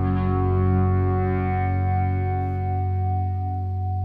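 Electric guitars holding a sustained chord through chorus and echo effects over a steady low bass note, slowly fading.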